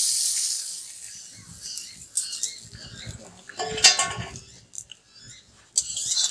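Hot oil sizzling in an iron wok as pieces of badi (sun-dried lentil dumplings) fry. The sizzle is loudest at the start and fades over the first second or two. There is a short clatter about four seconds in, and the sizzle rises again near the end as a metal spatula starts stirring.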